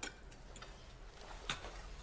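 Faint light clicks over quiet room tone, a sharper one about a second and a half in.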